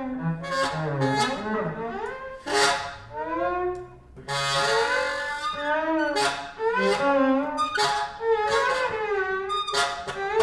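Saxophone and violin improvising freely together: pitched lines that bend and slide, broken by short sharp accents, with an airy, hissy passage a little before the middle.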